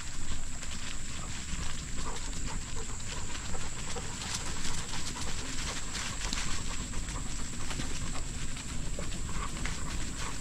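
Bicycle rolling along a dirt farm trail, with continuous tyre crunch and small rattling clicks over a low rumble of wind on the microphone. The dogs run alongside, and a steady high hiss sits over everything.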